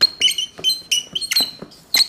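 A marker squeaking on a whiteboard in a quick run of short, high strokes, about eight in two seconds, as capital letters are written and then underlined.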